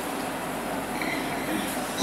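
A pause between a man's chanting and his speech, filled by a steady, even background hiss of the recording, with no voice.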